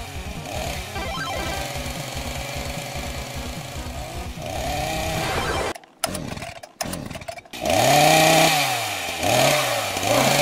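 Chainsaw running and revving, its pitch rising and falling, loudest in the last couple of seconds, mixed with background music. The sound drops out briefly about six seconds in.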